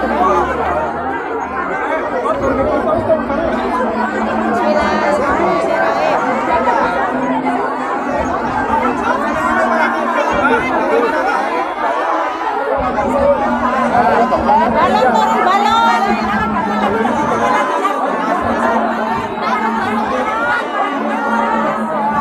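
A crowd of many people talking at once, a dense, continuous babble of overlapping voices.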